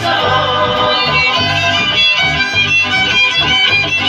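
Live band music played loud over a PA: acoustic guitars and a group of voices, with low bass notes and a high wavering melody line on top.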